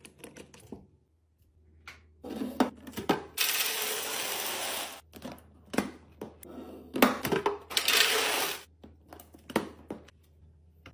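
A few small plastic clicks from a pump top being fitted to a bottle, then hard dry cereal pieces pouring and clattering into a clear plastic canister in two long rattling rushes, with clicks of the container's lid.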